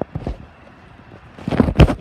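Handling noise on a phone's microphone as it is carried and moved: a knock at the start, a quiet stretch, then a loud rumbling burst of bumps and wind near the end.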